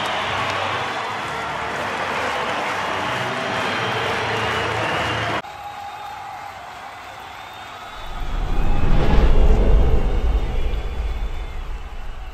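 Large stadium crowd cheering and applauding, cut off suddenly about five seconds in. After a quieter stretch, a deep rumbling whoosh swells up about eight seconds in and slowly fades, a sound effect under an animated club logo.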